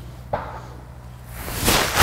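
Golf driver swung off a tee mat: a rising swish near the end, into the crack of the club striking the ball.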